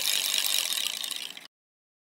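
Edited-in transition sound effect for an animated title card: a rapid, grainy high-pitched ticking hiss that fades out about a second and a half in, then dead silence.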